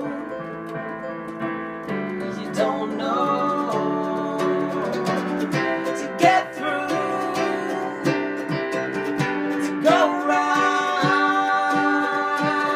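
A live acoustic song: a mandolin strummed over chords on an electric keyboard, with a man singing at times.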